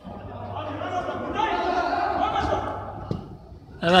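Men's voices calling out across a large indoor hall, faint and echoing, over a steady low hum. A close man's voice says "Evet" near the end.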